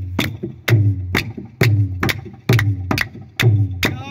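Solo hand drumming on a set of tablas and a barrel drum: a steady beat of about two deep bass strokes a second, each with a sharp slap on top and a ring that sinks slightly in pitch, with lighter strokes in between.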